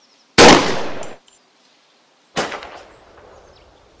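Two gunshots about two seconds apart, the first louder, each dying away over a second or so.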